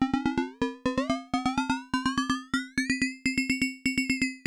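Roland TR-6S drum machine playing a fast repeating pattern of an FM-synthesized open hi-hat sound, its pitch and tone sweeping upward as the Morph control knob is turned, then holding steady about three seconds in.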